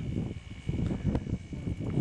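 Wind buffeting the microphone outdoors as an uneven low rumble, with a steady high-pitched insect drone behind it.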